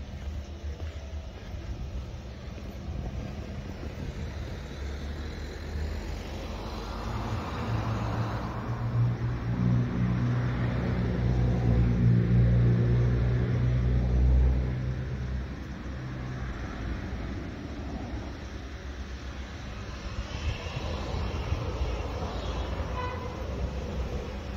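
A motor vehicle drives past, its engine growing louder over several seconds, loudest about halfway through, then fading away.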